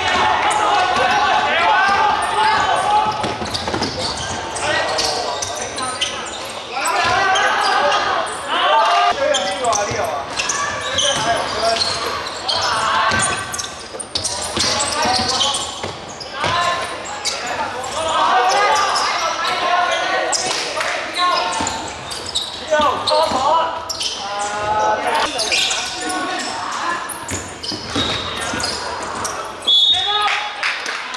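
A basketball bouncing on a hardwood gym floor during play, under voices calling out almost continuously.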